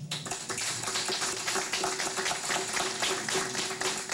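A roomful of people applauding: many hand claps running together.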